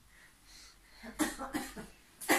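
A person coughing several times in quick succession, starting about a second in.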